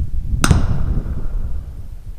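A single gunshot cracks about half a second in, followed by a brief echo. Low wind rumble on the microphone continues underneath.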